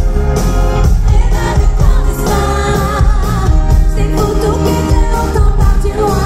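Loud amplified pop music at a live concert, with a woman singing into a handheld microphone over a band with keyboards and strong bass. About two to three seconds in she holds wavering notes.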